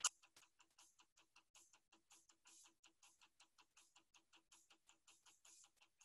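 Near silence with faint, fast, evenly spaced ticking, several ticks a second.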